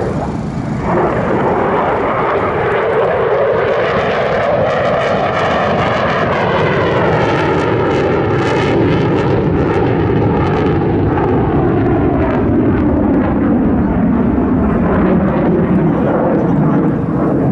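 F-16 fighter jet flying past overhead, its jet engine noise swelling about a second in. Through the middle the sound has a sweeping, phasing whoosh, and its pitch falls steadily as the jet moves away.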